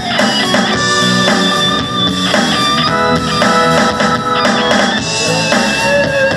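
Live rock band playing an instrumental passage: electric and acoustic guitars with bass guitar and drum kit.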